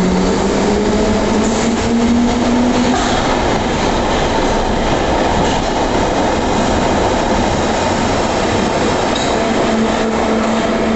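A Bakerloo line 1972 Stock tube train accelerating out of the platform. Its traction-motor whine rises in pitch over the first few seconds, then gives way to a steady, loud rumble and clatter of wheels on rail as the cars run past.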